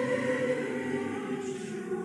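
Choir of men and women singing held notes in chords.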